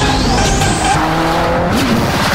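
Ford Fiesta rally car's engine running and its tyres squealing, mixed with loud added music. A thin whistle climbs steadily in pitch through the first second.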